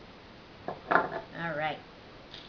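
A wood-mounted rubber stamp set down hard, two sharp wooden knocks a little under a second in, the second the louder, followed by a brief wordless vocal sound.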